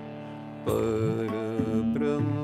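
Harmonium holding a sustained reed chord, then about two-thirds of a second in a louder chord comes in and a man's voice sings a devotional chant over it, sliding between notes.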